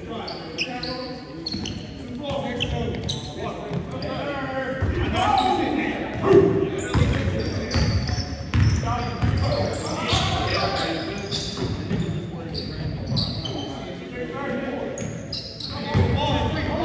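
Basketball dribbling on a hardwood gym floor, with sneakers squeaking and players calling out, echoing in a large gym.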